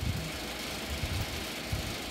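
Steady background hiss with a low, uneven rumble underneath, with no voice.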